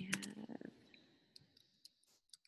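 Computer keyboard keys clicking softly as a few words are typed: a handful of separate keystrokes, spaced unevenly, most of them in the second half.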